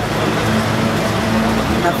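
Steady background motor-traffic noise with a low, even hum running under it. A woman's voice starts again near the end.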